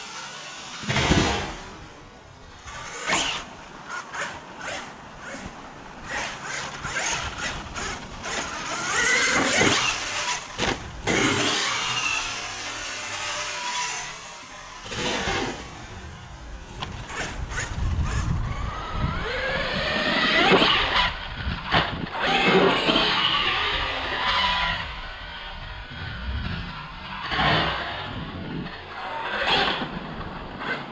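Losi Super Baja Rey 2.0 large-scale electric RC truck driven hard on a dirt track. The motor's whine rises and falls with the throttle, with repeated knocks from jumps, landings and the chassis bouncing over the ground.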